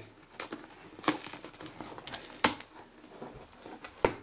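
Cardboard shipping box being opened by hand, its flaps pulled apart and handled, with sharp snaps about half a second, one second and two and a half seconds in.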